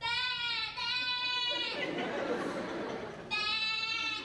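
An actor's high, held vocal squeal, a deliberate nonsense noise for the 'Ball of Noise' theatre game, slightly wavering in pitch. It sounds twice: a long call of nearly two seconds at the start, a rougher noisy stretch, then a shorter call near the end.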